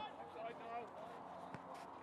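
Faint voices of players calling across the pitch, with one sharp knock about one and a half seconds in.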